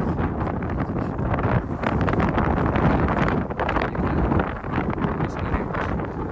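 Wind blowing across the microphone: a steady low rush of noise that swells and dips unevenly.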